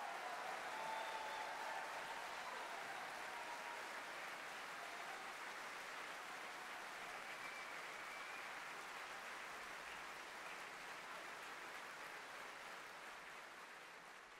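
Audience applauding, the applause fading out gradually toward the end.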